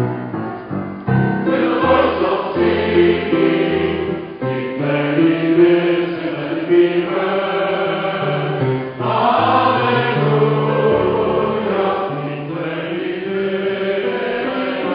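A choir singing with piano accompaniment. The piano plays alone for about the first second before the voices come in.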